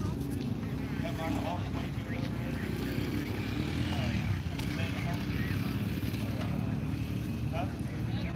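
Outdoor ambience: a steady low rumble under faint, distant voices.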